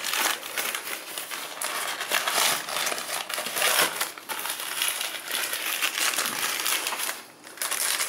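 Fish-and-chip shop paper wrapping crinkling and rustling steadily as the parcel is handled and unwrapped, with a brief lull near the end.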